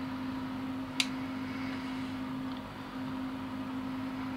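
A single sharp snip about a second in, as small flush cutters bite through a 1:64 scale model car's rubber tire, over a steady low hum.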